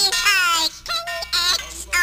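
High-pitched, sped-up comic voices babbling in short phrases without clear words: the speeded-up voices of the pleading turkey characters in a radio comedy skit.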